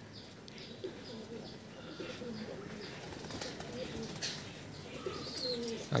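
Domestic pigeons cooing faintly, with a couple of short sharp sounds about three and four seconds in.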